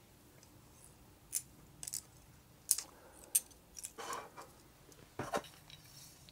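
A float-fishing rig being wound onto a plastic rig winder by hand: a few light, separate clicks and small handling rustles, about one every second.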